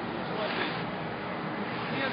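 Indistinct speech over a steady background noise.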